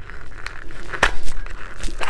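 Hands working at a stiff, small press-button pen box, with faint rustling and handling clicks and one sharp click about halfway through, as the box resists opening.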